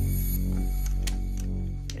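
Low, steady droning hum from a dark ambient background score, with a few faint ticks about a second in.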